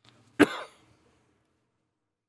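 A single short cough picked up by an open microphone, sharp and loud at the onset and fading within about a third of a second.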